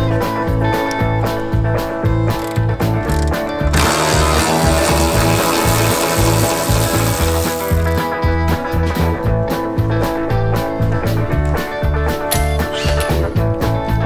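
Background music with a steady beat, over repeated clicking of a hand socket ratchet. A stretch of hiss starts about four seconds in and lasts some four seconds.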